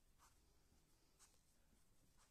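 Near silence, with two faint soft ticks from a crochet hook working through yarn.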